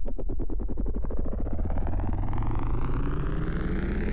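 Synthesized suspense sound effect: a rapidly pulsing tone over a steady low hum, rising slowly in pitch.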